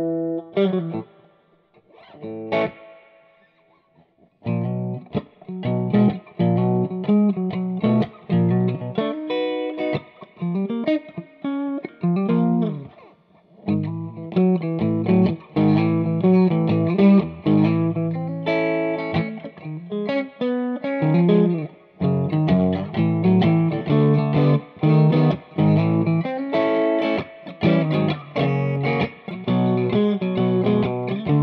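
Electric guitar (a Stratocaster with D. Allen Voodoo 69 pickups) played through an Ampeg Reverberocket II tube amp. A chord rings out and there is a pause of about three seconds with a single strum. Then come steady, busy chords and riffs.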